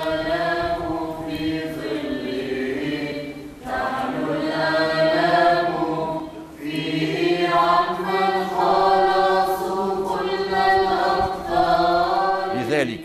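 A choir singing a slow church chant in long held phrases, breaking off briefly twice.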